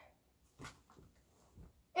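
Faint rustling of a cloth hoodie being handled, with a few brief soft handling noises.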